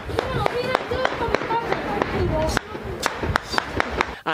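Rapid, irregular rifle shots, several a second, going on throughout, mixed with people's excited voices.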